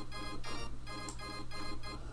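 Software keyboard instrument in LMMS playing a chord stacked over several octaves by the chord-stacking range setting, re-struck in quick even notes about five times a second, with an organ-like tone. A steady low hum runs underneath.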